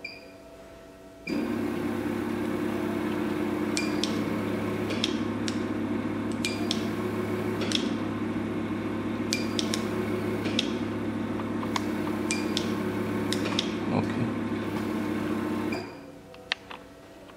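A microneedle RF treatment machine running: a steady low hum, typical of its suction pump, starts abruptly about a second in and cuts off just before the end. Sharp clicks sound every second or so over the hum.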